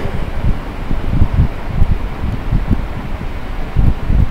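Wind buffeting the microphone: irregular low rumbling gusts that come and go, with a strong one near the end.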